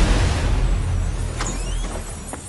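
Cartoon magic sound effect: a low rumble and rushing whoosh that fades away, with a short rising shimmer about one and a half seconds in.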